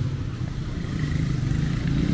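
Motorcycle engine running in passing street traffic, a steady low hum that grows a little louder in the second half.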